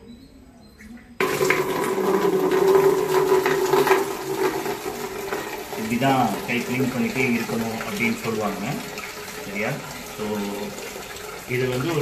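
Water tap turned on about a second in, then running steadily, the stream splashing into a plastic bucket below while hands are washed under it.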